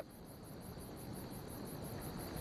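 Crickets chirping faintly in an even pulsing rhythm, about five pulses a second, over a steady high trill.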